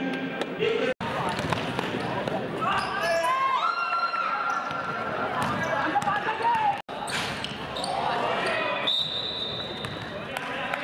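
A basketball being dribbled and played on an indoor court, with players and spectators talking and shouting. The sound drops out for an instant at three cuts, and a high steady whistle-like tone sounds near the end.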